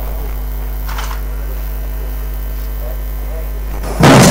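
Steady low electrical mains hum at an even level, with a short burst of hiss about a second in and faint distant voices.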